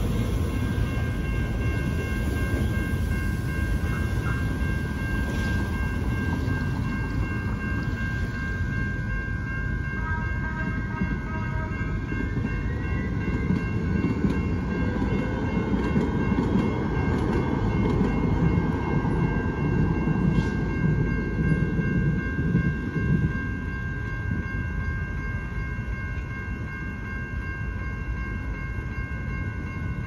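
Electronic railroad crossing bells (Safetran Type 3) ringing without a break, while an MTS light-rail trolley passes through the crossing. A few short horn blasts come about ten seconds in, then the rumble of the trolley's wheels and motors builds, is loudest from about fourteen to twenty-three seconds, and fades as the bells keep ringing.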